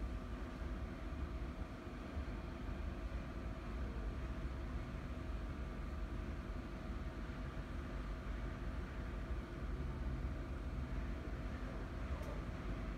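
Steady low background rumble with a faint steady hum and no distinct events.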